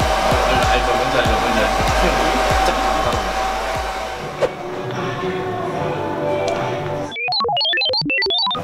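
Hair dryer blowing steadily over background music, switching off about four seconds in, after which the music carries on. Near the end, a short run of quick plinking notes jumping up and down.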